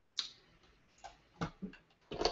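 Computer mouse clicking: about four short, separate clicks over two seconds.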